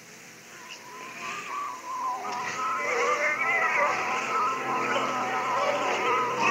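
Many voices of a congregation praying aloud all at once, overlapping in a wavering mass, swelling up from quiet over the first two or three seconds and holding steady after that.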